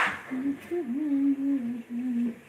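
A person humming a short tune in one unbroken, gently wavering line of pitch, starting a moment after a brief clatter.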